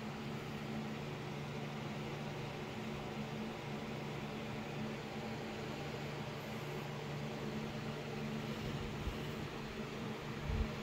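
A steady low mechanical hum with an even hiss, like a fan or appliance running, unchanging throughout.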